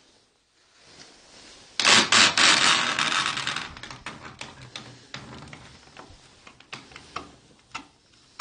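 An old wooden lattice door being pulled open, starting suddenly about two seconds in with a loud dense rattle and scrape that fades over a couple of seconds, then a few small clicks of the wood.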